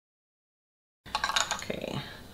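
Dead silence, then about a second in the sound cuts in abruptly with a few sharp clicks and a brief voice-like sound.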